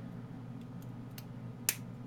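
A battery being pressed into its holder on a small circuit board: a few faint ticks, then one sharp click near the end.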